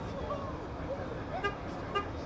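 Open-field ambience: a steady low rumble with faint, distant voices. Near the end come two short, high-pitched toots about half a second apart.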